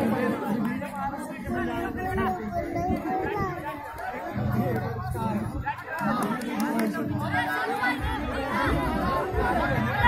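Crowd of spectators chattering, many voices talking over one another.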